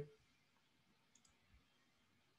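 Near silence: room tone, broken by a few faint short clicks a little over a second in and once more about half a second later.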